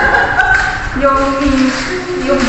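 Mostly people talking, with light handling noise from paper gift wrapping being opened.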